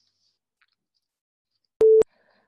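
A single short electronic beep, one steady mid-pitched tone starting with a click near the end, after near quiet. It is the PTE computer-based test's cue that microphone recording has started for the spoken response.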